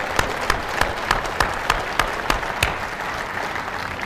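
Audience applauding, many hands clapping at once, thinning out and dying down near the end.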